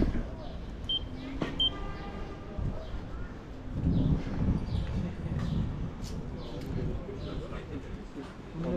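Low rumble of wind and wheels rolling slowly over paving stones, with indistinct voices of people talking nearby and two short high beeps about a second in.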